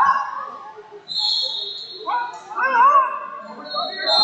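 Voices calling out in a gym hall, with pitched, wavering cries loudest in the second half. A steady high-pitched whine drops out about a second in and returns near the end.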